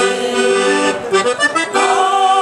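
Accordion playing a short passage between sung lines of a religious folk song: a held chord, then a quick run of notes about halfway through. The women's choir comes back in near the end.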